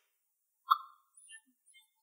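Near silence with one short clink about two-thirds of a second in, ringing briefly, followed by a few faint high tones.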